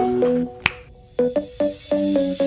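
Background music: short keyboard-like notes in a repeating pattern, with a single sharp snap about two-thirds of a second in and a brief pause before the notes come back.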